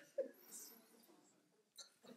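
Near silence: room tone, with one brief faint voice sound just after the start.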